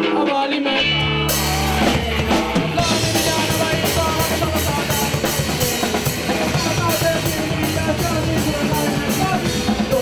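Ska-punk band playing live: electric guitar and bass, with the full drum kit and cymbals coming in about a second in and driving a steady fast beat after that.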